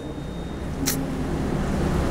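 Low, steady background rumble in a pause of speech, with a brief soft hiss about a second in.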